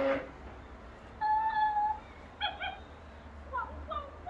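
Interactive plush toy dog making electronic dog sounds while handled: a short loud cry at the start, a held high whimper about a second in, two quick yips, then a few short falling notes near the end.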